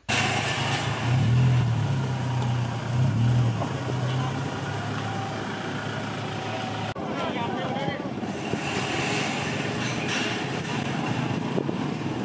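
Road traffic, with a car engine's low hum strong for the first several seconds, then a sudden change about seven seconds in to a noisier mix of traffic and indistinct voices.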